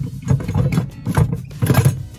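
Honda Element's stowed scissor jack rattling as it is shaken by hand, metal knocking against its mounting bracket in a quick series of knocks. This is the suspected cause of the rear-end rattle over bumps.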